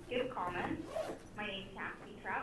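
Speech: a woman's voice talking over a call line into the meeting room's sound system.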